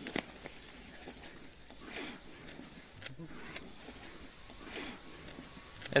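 Crickets chirring steadily in one high, even band, with faint scattered knocks and brief animal sounds underneath.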